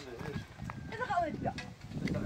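People talking.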